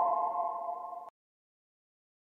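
Final held synthesizer chord of the beat, a few steady tones fading slowly, then cutting off abruptly about a second in as the track ends.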